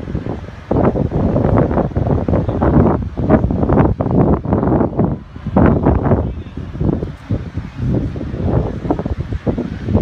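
Wind buffeting the microphone: loud, deep gusting noise that swells and drops every second or so.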